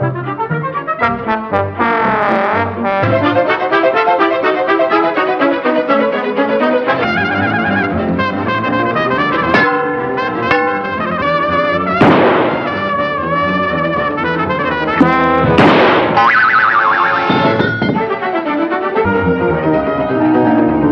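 Orchestral cartoon score led by brass, its lively phrases following the action on screen. Two sudden noisy hits, sound effects, cut through it about twelve and sixteen seconds in.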